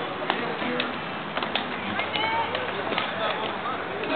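Indistinct background chatter from a crowd of cyclists and onlookers, with a few scattered sharp clicks.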